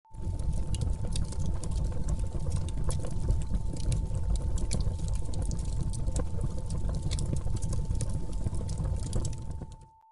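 Irregular crackling and pattering over a steady low rumble, with a thin steady high tone throughout; it all fades out just before the end.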